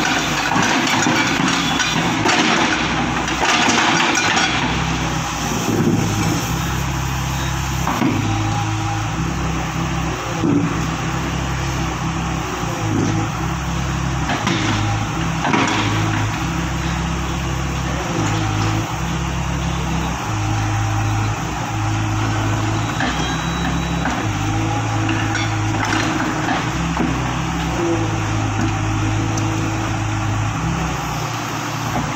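Tata Hitachi hydraulic excavator's diesel engine running steadily, its note stepping up and down every second or two as the arm and bucket are worked. A few sharp knocks stand out, the clearest a few seconds in and around the middle.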